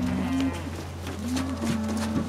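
Cattle mooing: several drawn-out low calls, each about half a second long, with faint footsteps on wooden steps between them.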